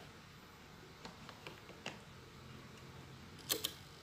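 Quiet room tone broken by a few light clicks, then a sharper double click near the end.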